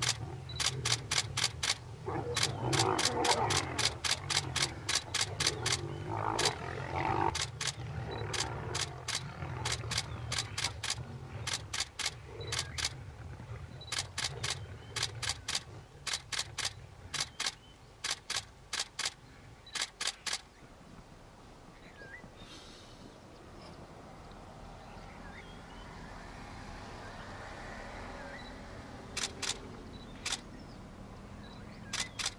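A camera shutter firing in rapid bursts of clicks, over lions growling as they scuffle over a warthog carcass. The growling is loudest in the first several seconds. The shutter bursts stop about two-thirds of the way through, and one last short burst comes near the end.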